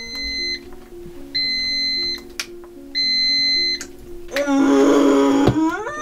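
Enteral feeding pump beeping: four long, steady beeps about a second and a half apart while its buttons are pressed. Background music with held notes runs underneath, and a louder sustained sound swells in near the end.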